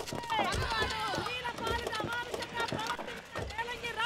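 Quick footsteps of several people running, with a crowd of voices shouting slogans behind them.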